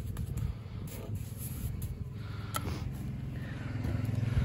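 A steady low engine hum running in the background, with a few faint clicks, one about two and a half seconds in.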